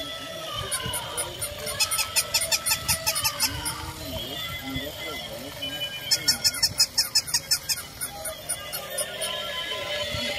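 Battery-operated walking toy animals running together: tinny electronic tunes and sound effects from their built-in speakers, with two bursts of rapid, evenly spaced clicking, about six a second, around two seconds in and again around six seconds in.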